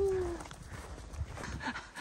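A woman's drawn-out "oh" of wonder trails off in the first half-second, followed by faint footsteps in snow and low rumble.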